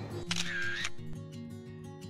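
Background music with a camera shutter sound effect about half a second in, followed by sustained musical notes.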